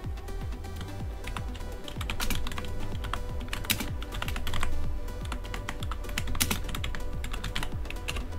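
Typing on a computer keyboard: a run of irregular key clicks as a terminal command is entered, over background music.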